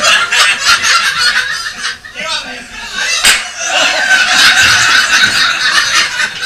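A group of people laughing and chattering together inside a steel hyperbaric dive chamber, with a single sharp snap about three seconds in.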